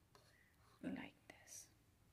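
Near silence: room tone with a few faint, brief soft sounds about halfway through.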